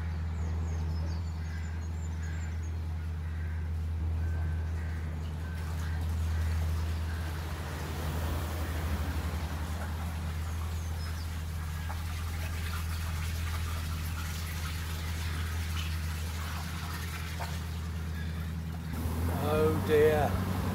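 Narrowboat's diesel engine running steadily while cruising, a low even hum, with a few bird chirps in the first few seconds. A brief louder pitched sound comes right at the end.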